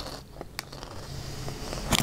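Quiet chewing of crunchy veggie straws, with a few scattered short crackles.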